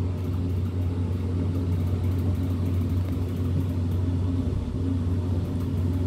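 A steady low hum, unchanging in level and pitch.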